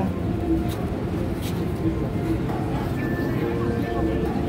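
Indistinct voices of people around the recorder over a steady low rumble of background noise.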